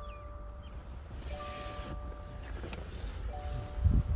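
Car's interior warning chime sounding a repeated held note, each about a second long with short gaps, over a low rumble. A low thump comes near the end as the driver's door is opened.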